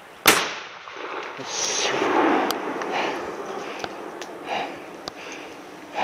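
A single loud shot from a scoped hunting gun, fired at a deer about a third of a second in, followed by a few seconds of quieter handling and movement noise.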